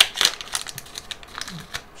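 Foil trading-card booster pack wrapper crinkling and crackling as it is pulled open by hand. The crackle is loudest at the start, followed by lighter, irregular crackles of the wrapper being handled.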